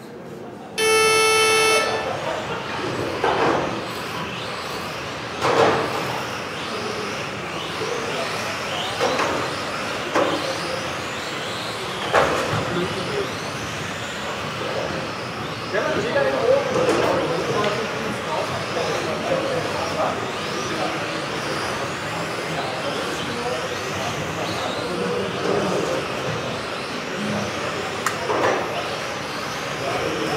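A loud electronic start tone held for about a second, then several radio-controlled touring cars racing, their motors whining in many overlapping rising and falling pitches as they speed up and brake, with a few sharp knocks.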